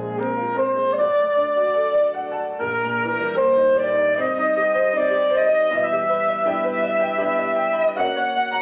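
Soprano saxophone and grand piano playing a classical piece together. The saxophone holds long, sustained notes over the piano's chords.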